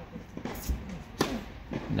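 Tennis ball struck with a two-handled tennis racket as the point opens on a serve: a softer knock just under a second in, then a sharp pock just after a second in.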